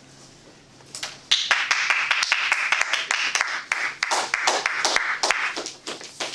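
Small audience applauding, starting about a second in and dying away near the end, over a low steady room hum.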